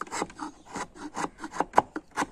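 Knife blade paring and scraping a small block of wood in quick short strokes, several a second, one stroke sharper near the end.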